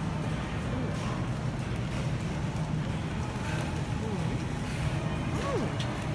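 Steady supermarket ambience: a constant low hum with faint background voices and music. Near the end comes a short murmured "mm" from the taster.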